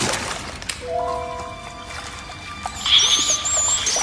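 Cartoon soundtrack: a watery splash and trickle at the start, then music with a few held tones. From about three seconds in come high, wavering squeaks of rats.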